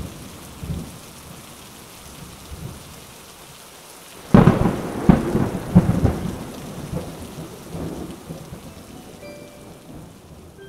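Steady rain falling, then a sudden loud thunderclap about four seconds in that rumbles on for several seconds before fading.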